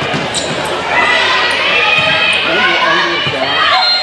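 A volleyball being struck and hitting the court in a gym, a few sharp hits during play, amid players' and spectators' shouting voices.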